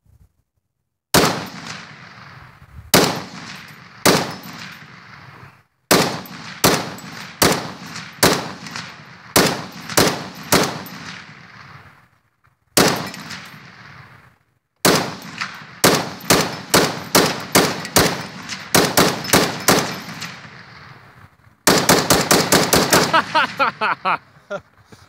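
Browning M1919 belt-fed machine gun firing, first as single shots and strings of single shots about half a second apart with short pauses between, then a fast automatic burst of about two seconds near the end.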